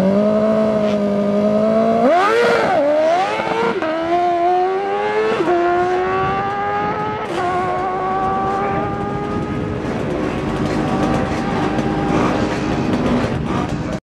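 Suzuki drag-racing motorcycle engine held at steady revs on the start line, then launching about two seconds in and accelerating hard. Three upshifts follow, each a drop and climb in pitch about two seconds apart. The engine fades as the bike runs away down the strip.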